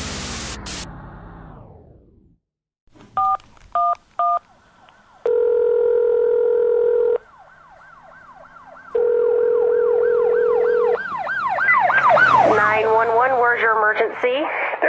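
A loud noise dies away over the first two seconds. Then three telephone keypad tones dial 911, followed by two long rings of the ringback tone. Emergency-vehicle sirens wail under the ringing and grow louder toward the end, several at once.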